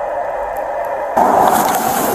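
A steady hiss inside a car cabin, then an abrupt change about a second in to louder rustling and rubbing, as a body-worn camera is jostled by its wearer's movement.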